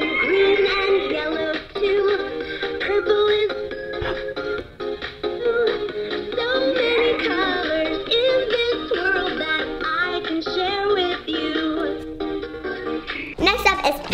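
VTech Myla the Magical Unicorn interactive plush toy singing a song through its built-in speaker: a synthetic, sing-song voice over a backing tune.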